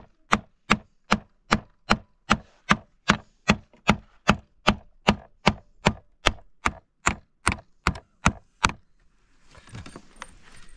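Hammer blows on a wooden crosspiece laid across the planks of a door being built. The sharp, even strikes come about two and a half a second and stop about a second before the end.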